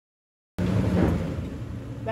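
Silent for the first half second, then the Lexus GX460's V8 engine cuts in, running low and steady as the SUV crawls over rock, with wind rumbling on the microphone.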